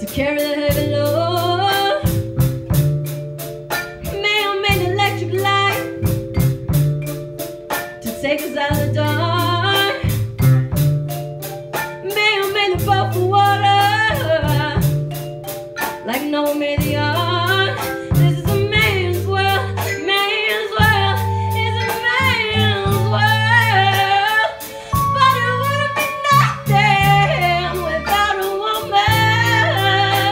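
A female vocalist sings live into a microphone, backed by an ensemble of marimba, violins, bass and percussion. A repeating bass line and a steady beat run under the voice.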